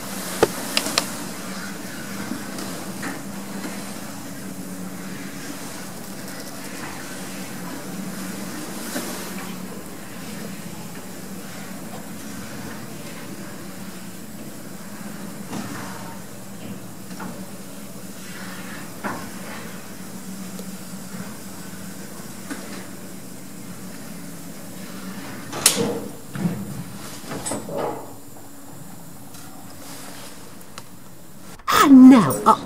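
Old Hammond & Champness lift car travelling up its shaft, heard from on top of the car: a steady low hum with scattered clicks and knocks, and a cluster of louder knocks near the end.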